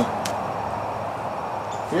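Steady background hiss, with one faint click about a quarter second in; a man's voice begins right at the end.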